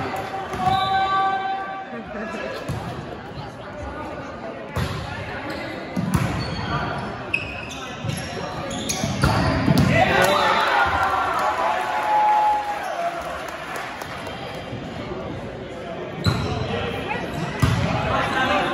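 Volleyball rally in an echoing gym: the ball is struck with sharp slaps several times, sneakers squeak on the hardwood, and spectators talk and shout, their voices swelling around the middle.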